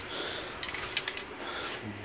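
Faint handling noise: a few light clicks and rustles around the middle as an aerosol spray paint can is picked up in the hand.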